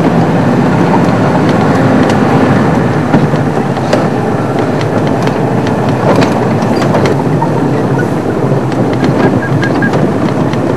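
Game-drive vehicle driving over a rough bush track, its engine running steadily under scattered knocks and rattles.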